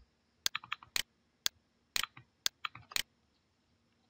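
Computer mouse and keyboard clicking close to the microphone: about a dozen sharp clicks over three seconds, some in quick pairs like double-clicks.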